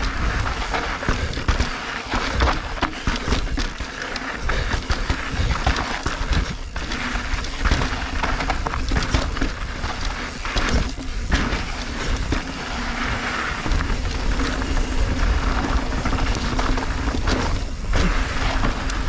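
A Deviate Highlander high-pivot mountain bike ridden fast down a rocky, gritty trail: tyres crunching on grit and the frame and drivetrain clattering over stones in quick irregular knocks. Wind rumbles on the camera's microphone throughout.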